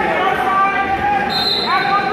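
Spectators at a wrestling match shouting and calling out to the wrestlers, many voices overlapping, with a short high steady tone in the second half.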